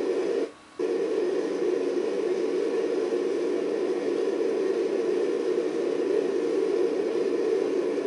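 Steady noise of a five-segment solid rocket booster firing on a horizontal static test stand, heard through a television's speaker. The sound drops out briefly about half a second in.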